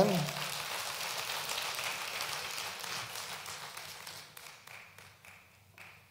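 Congregation applauding, dying away over about five seconds.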